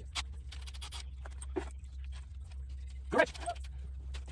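Light metal clicks and taps of steel head studs being handled and threaded into an engine block, over a steady low hum. About three seconds in, a short cry-like vocal sound is the loudest thing.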